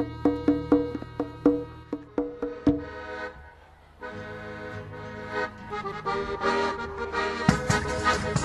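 Arbëreshë folk music with accordion: a run of sharply struck notes, about four a second, breaks off briefly about three and a half seconds in, then accordion chords come in and build toward the end.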